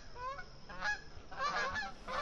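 Canada geese honking: short calls, about one every two-thirds of a second.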